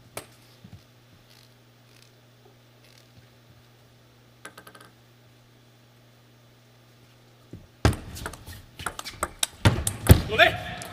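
Celluloid-plastic table tennis ball clicking: a quick run of small bounces about halfway through, then from about eight seconds in a rally of sharp clicks off rackets and table over rising hall noise, with a low steady hum of the arena underneath.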